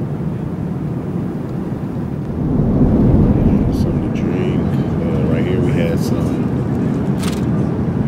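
Steady low rumble of an Airbus A350-900 cabin in flight, engine and airflow noise, louder from about two and a half seconds in, with faint indistinct voices over it.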